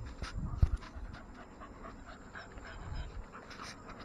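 American bully dogs panting close by, with a thump about half a second in.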